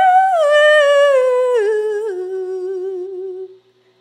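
A woman's wordless sung line, stepping down in pitch through several notes and settling on a long low note with vibrato that fades away near the end.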